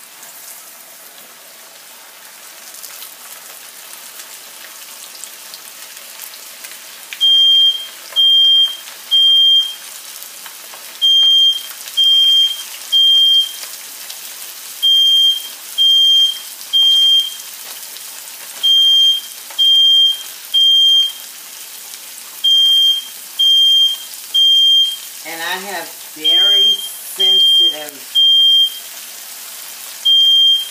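Cornmeal-coated catfish fillets sizzling as they fry in hot oil in a skillet, the sizzle building over the first several seconds. From about seven seconds in, a household smoke alarm set off by the frying sounds loud, high beeps in repeating groups of three.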